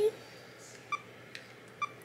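Two short electronic beeps about a second apart, with a faint tick between them: a Canon camera's autofocus confirmation beep as it is set to focus.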